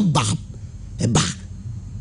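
A man's voice: two short, breathy vocal sounds, one at the start and one about a second in, rather than words.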